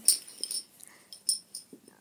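Hard plastic Connect 4 discs clicking against each other and the grid: a sharp click right at the start, then a few lighter clicks.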